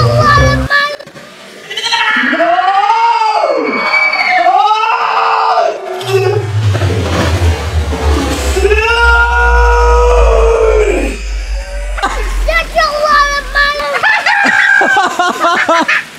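Voices and laughter, then a slowed-down replay of a splash into a pool: drawn-out, deep voices with long sliding pitch over a low rumble, before normal-speed voices return near the end.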